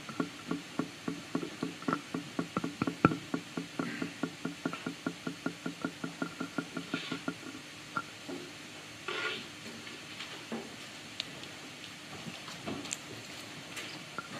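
Rapid, evenly spaced clicking, about four clicks a second, which stops about eight seconds in; a couple of brief rustles follow.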